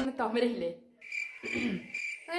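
A woman's voice for a moment. Then, from about a second in, a steady high-pitched insect-like whine sets in, with a brief vocal sound over it.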